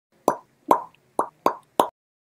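Intro animation sound effect: five short pops in quick succession, each fading fast, a third to half a second apart.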